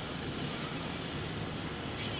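Steady interior noise of a car driving on a slushy road: engine and tyre noise heard from inside the cabin.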